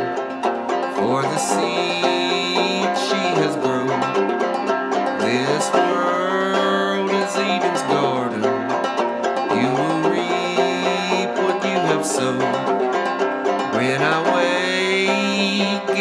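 Open-back banjo played clawhammer style: a steady instrumental passage with no singing.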